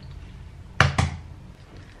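Two sharp knocks about a fifth of a second apart: an egg tapped on the rim of a plastic mixing bowl to crack it.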